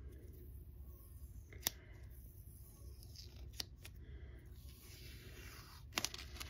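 Washi tape roll packaging being opened by hand: a few sharp clicks about a second and a half in and twice near four seconds, over a low steady hum.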